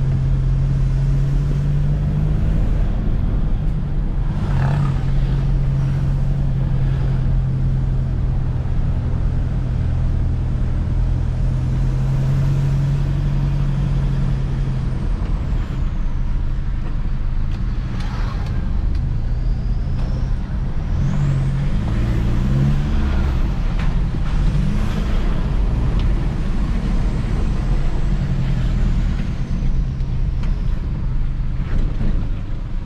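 Toyota Hilux Vigo pickup driving, heard from inside the cab: a steady engine drone with tyre and road noise on a wet road. About halfway through, the engine note starts to shift up and down several times, with a couple of brief knocks along the way.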